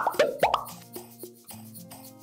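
A quick run of cartoon-style popping sound effects in the first half second, each with a short pitch sweep, timed to an on-screen caption bursting into view. Background music with a steady beat runs under it.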